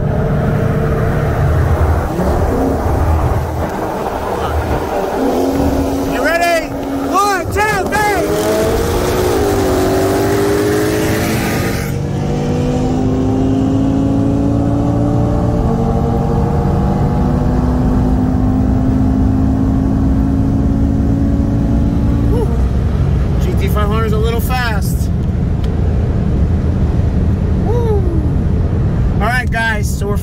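Modified 2018 Audi RS3's turbocharged five-cylinder engine, with a full turbo-back exhaust and an E85 tune, under full throttle from inside the cabin in a roll race from 60 mph in third gear. Its pitch climbs through the gears and drops at each upshift, the first about twelve seconds in.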